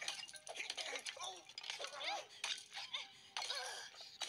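Cartoon fight soundtrack: short wordless shouts and grunts mixed with sharp hits, clinks and a breaking or shattering effect, over background music.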